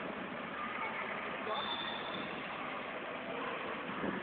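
Volvo B12R double-decker coach's six-cylinder diesel engine running steadily at low speed as the bus pulls into a garage, with voices in the background and a brief high tone about a second and a half in.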